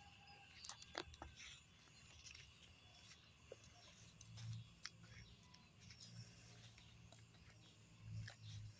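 Near silence: faint outdoor ambience with a few soft, scattered clicks.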